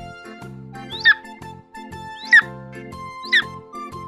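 Three short, high calls of a bird of prey, each a quick upward sweep falling away, about a second apart, over background music with a steady beat.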